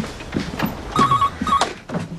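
Landline telephone ringing with a rapid warbling ring, two short bursts about a second in and a second and a half in, with a few knocks as the handset is picked up.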